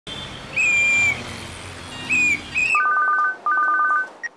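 Street traffic noise with a shrill whistle blown three times, one long blast then two short ones. About three seconds in, the street noise cuts off and a mobile phone rings: a rapid electronic two-note trill in two bursts.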